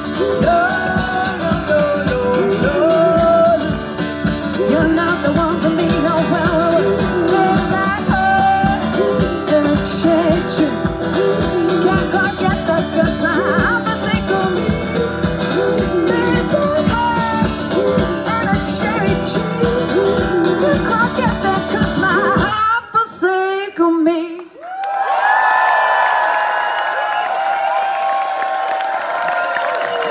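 Live strummed acoustic guitar with a woman singing a blues-rock number. About 23 seconds in it breaks off sharply, and after a short gap come a few seconds of held higher notes without bass that fade out.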